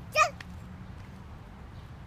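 A toddler's short high-pitched squeal about a quarter of a second in, over a low steady background rumble.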